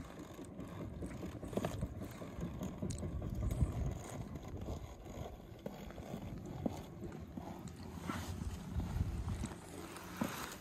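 Wind buffeting the microphone in uneven low gusts, strongest a few seconds in and again near the end, with a few faint scrapes and clicks.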